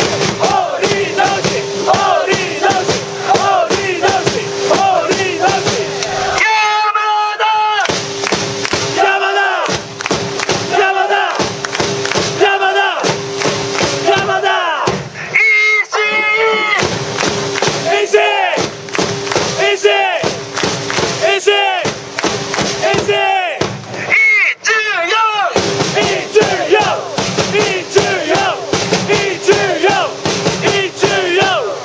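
Football supporters singing a chant together in unison: loud massed voices in short repeated phrases with brief breaks between them.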